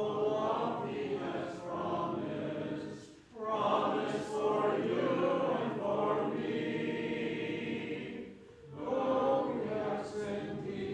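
A church congregation singing a hymn together, unaccompanied, in long held phrases with two short breaks for breath, about three seconds in and again near the end.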